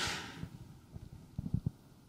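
Quiet pause in a room: a short hiss fades out over the first half second, then a few soft, low thumps come about one and a half seconds in.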